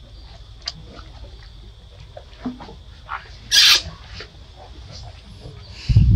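Baby macaque: one short, harsh, noisy squeal a little over halfway through, with small soft clicks around it, over a steady high background whine.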